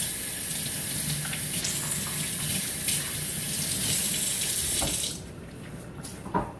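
Kitchen faucet running water into a stainless steel sink, a steady hiss that is shut off about five seconds in.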